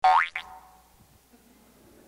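Cartoon sound effect: a quick upward pitch glide lasting about a third of a second, followed by a brief faint ring and then quiet room tone.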